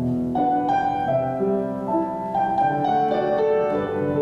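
Grand piano played solo: a melodic passage of single notes following one another over held lower notes.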